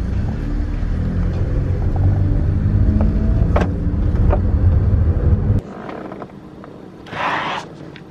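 Car driving off with the driver's window open: a steady low rumble of engine and road noise inside the cabin, which cuts off abruptly a little over halfway through. A short hiss follows near the end.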